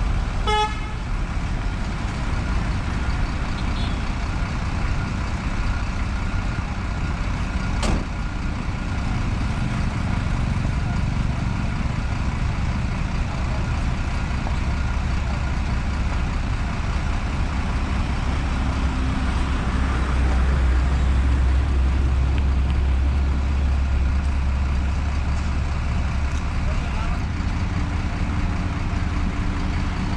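Heavy diesel engines of an asphalt paver and a dump truck running steadily at a paving site, a loud low rumble that swells slightly about two-thirds of the way through. A short toot sounds just at the start.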